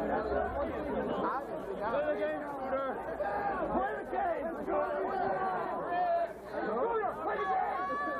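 Crowd of spectators chattering, many voices talking over one another at once with no single clear speaker.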